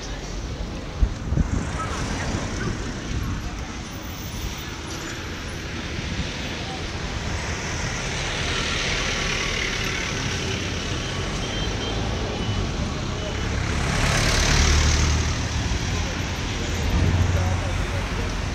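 Road traffic noise: a steady wash of passing cars and a small truck, swelling as vehicles go by, with the loudest pass about three-quarters of the way through and another just before the end. A few sharp knocks come about a second in.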